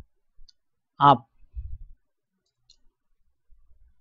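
A few faint clicks from computer input while a form is being filled in, with a short low thump about one and a half seconds in.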